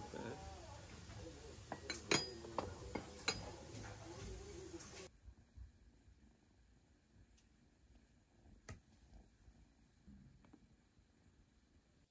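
Dishes and cutlery clinking on a crowded meal table, with faint voices under them. About five seconds in the sound cuts off sharply to near-quiet room tone with a few faint ticks.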